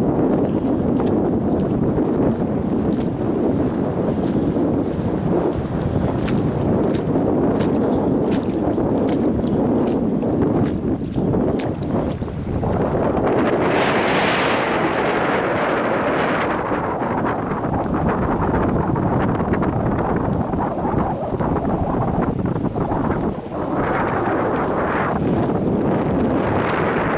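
Wind buffeting the microphone in a loud, steady rumble, with a brighter hiss rising for a few seconds about halfway through and again near the end.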